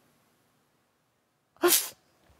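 A woman sneezes once, sharply, about one and a half seconds in, after near silence.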